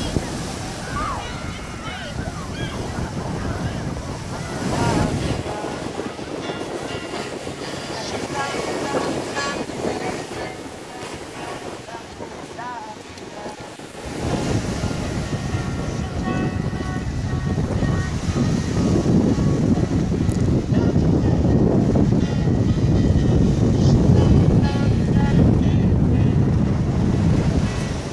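Lake waves breaking and washing up a pebble shore, with a few voices nearby. About halfway through the sound changes to a louder mix: wind buffeting the microphone, a beach crowd talking, and faint live music.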